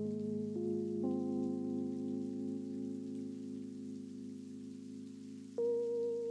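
Background music: sustained, soft synthesizer pad chords that shift a few times, with a higher note coming in near the end.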